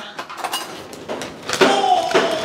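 A clear plastic zip-top bag of ground crayfish being handled and opened, a soft crinkly rustle with a few light clicks lasting about a second and a half.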